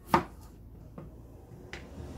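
Chef's knife cutting through baby potatoes and striking a plastic chopping board: one sharp knock just after the start, then a few fainter taps.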